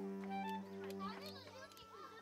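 Children chattering in the background over a steady low hum that fades out about one and a half seconds in. A few sharp clicks come from stone being pressure-flaked with a hand tool over a leather lap pad.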